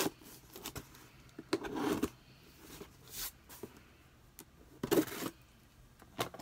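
A cardboard box being handled: a few short bursts of rustling and scraping, a second or so apart, over quiet room tone.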